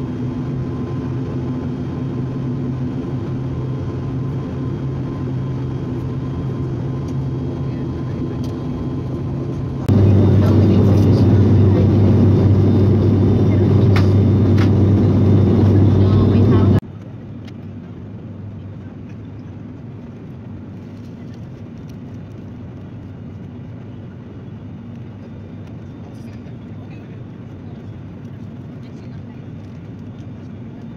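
A turboprop airliner's engines and propellers drone steadily, heard from inside the cabin. About ten seconds in, the drone jumps much louder. About seven seconds later it drops abruptly to a quieter, duller cabin drone.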